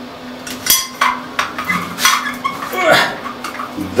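Chrome-plated shower-rail wall bracket clicking and clinking as it is handled and pushed onto its wall fixing against the tiles: a string of sharp, irregular metallic clicks and knocks.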